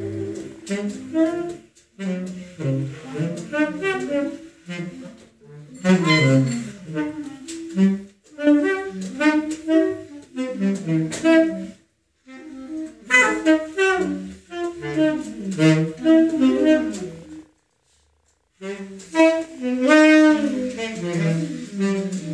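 Saxophone and clarinet playing free, halting jazz phrases with fast-wavering pitches, broken by several short silences, the longest lasting about a second near the end.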